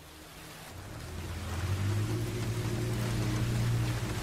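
A low, steady drone from the film soundtrack swells in about a second in and holds over a faint hiss.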